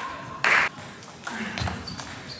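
Table tennis ball clicking off bats and table, a few sharp clicks, with a louder short burst about half a second in.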